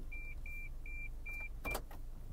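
A car's in-cabin beeper sounds a run of short, high-pitched beeps, about two and a half a second, while reverse gear is selected and the backup camera is showing. The beeping stops near the end with a click.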